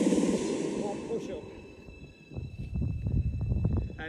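Electronic dance music with a steady beat fades out over the first second or so. Then a low rumble of wind buffeting the microphone comes in, with a few light knocks.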